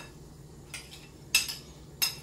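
A spoon clinking sharply against a bowl once, about one and a half seconds in, with a fainter knock a little before, as filling is scooped out onto pirozhki dough.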